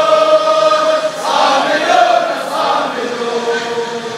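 A large crowd of marchers chanting in unison, with long drawn-out notes that shift in pitch every second or so.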